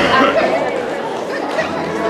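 Indistinct chatter of many voices in a crowded gym, with a short knock right at the start.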